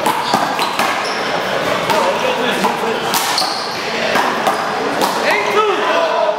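One-wall handball rally: repeated sharp smacks of the small rubber ball off players' hands and the wall, with voices talking in the background.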